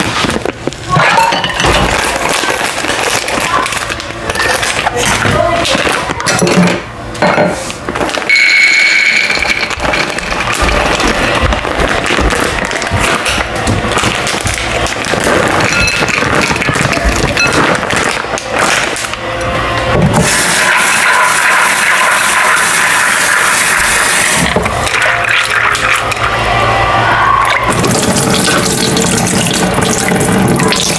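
Kitchen sink work: a plastic bag crinkling and being handled, raw peanuts poured out of a bag into a bowl, and tap water running into the bowl near the end to rinse them.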